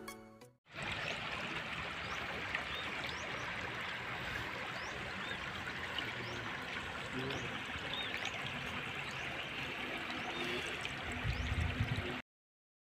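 A fast-flowing river rushing steadily, starting right after a short end of music in the first second.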